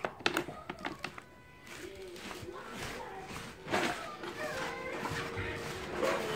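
Faint voices in the background, with a few light clicks and knocks in the first second.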